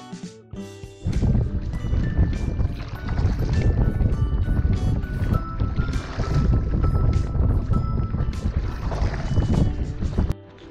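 Wind buffeting the microphone, with water washing around a kayak being paddled across choppy water. The rumble starts suddenly about a second in, over faint background music.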